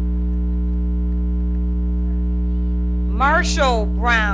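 Steady electrical mains hum on the recording. About three seconds in, a loud shouted cheer from someone in the crowd rises and then falls in pitch, and a second shout begins as the first ends.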